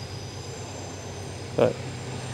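Steady low hum of room tone in a pause between a man's words; he says one short word, "but", near the end.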